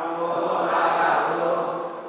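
Buddhist monk chanting into a microphone, amplified over loudspeakers, in long held tones that fade away near the end.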